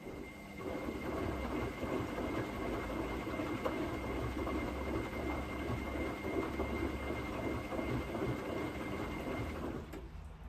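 Zanussi front-loading washing machine's drum turning through a tumble phase of the wash cycle, laundry and sudsy water sloshing inside over a steady high motor whine. It builds up just after the start and stops at the end, when the drum pauses.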